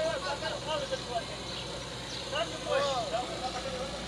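Diesel engines of a tractor and a wheeled excavator running steadily, with short bursts of voices calling now and then over the hum.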